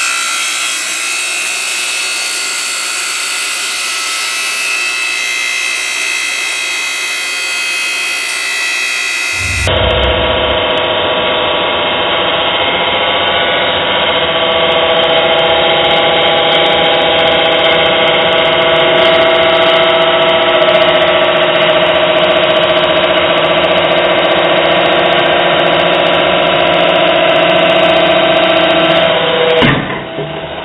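Electric log splitter's motor and hydraulic pump running steadily with a held whine as the ram presses on a glass bottle. About ten seconds in the sound turns duller and deeper.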